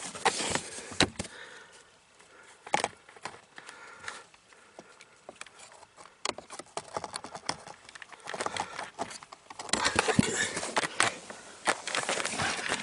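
Needle-nose pliers gripping and twisting a plastic evaporator temperature sensor in the HVAC housing: scattered light clicks, taps and scrapes, with a busier stretch of clicking and rustling near the end.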